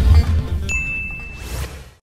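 Intro music with a deep bass, then a single bright ding about two-thirds of a second in, held for about a second while the music fades out.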